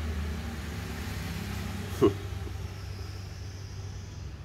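A steady low mechanical hum, with one short click about two seconds in.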